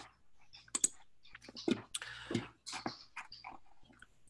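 Faint, irregular clicks and taps of a computer keyboard, a dozen or so scattered through the pause.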